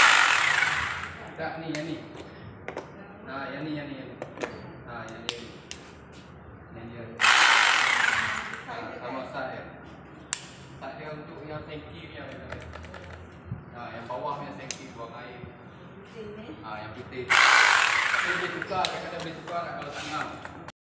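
Electric hammer drill switched on in three short runs of about two seconds each: near the start, about seven seconds in and about seventeen seconds in. It is being used to test newly wired socket outlets, and each run shows that the socket is live.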